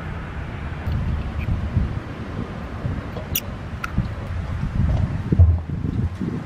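Low wind rumble on the microphone with rustling handling noise, and two light clicks a little past halfway.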